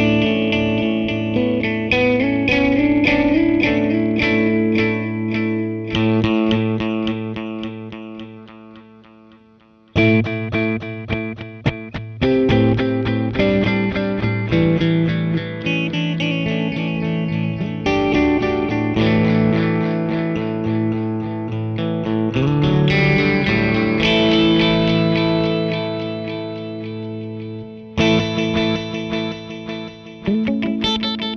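Electric guitar, a Gibson Les Paul, picked through the Meris Polymoon's cascading delay lines with its flanger bypassed, each note followed by trailing stereo-panned repeats. A phrase rings out and fades away before a new passage starts about ten seconds in.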